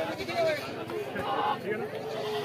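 A goat bleating briefly a little past halfway, over a background of people's voices.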